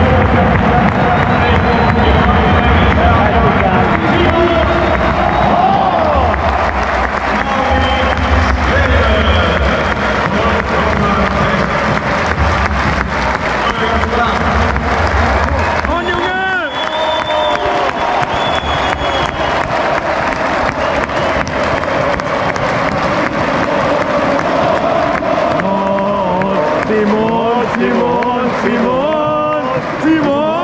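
Large football stadium crowd before kickoff: many voices singing and chanting together, with clapping and cheering.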